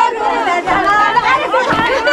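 Crowd of women's voices chattering and calling over one another, several at once.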